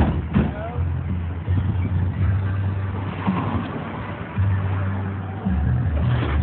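Mercury Grand Marquis V8 running with a low, steady drone that gets louder twice near the end.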